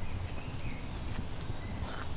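Footsteps of shoes on brick paving, a few steps about two-thirds of a second apart, over a steady low outdoor rumble with faint bird chirps.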